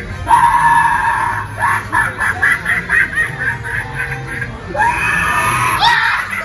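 Halloween animatronic clown's sound effects playing loudly: screaming and choppy cackling laughter over eerie music, with a sharp rising shriek near the end.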